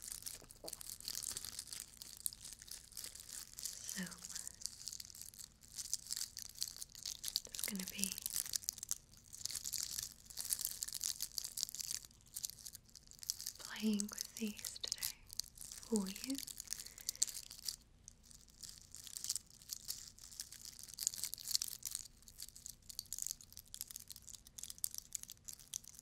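Fingers and nails scratching and rubbing a glitter-covered craft Easter egg close to the microphone: a dense, fine crackling and crinkling, like fire crackling, which she likens to a wire brush run through hair. A few brief soft mouth or voice sounds come in now and then.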